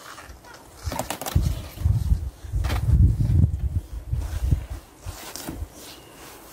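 Courgette plant leaves and stems rustling as a courgette is tugged off the plant, with a few short sharp rustles, over irregular low rumbling from wind on the microphone.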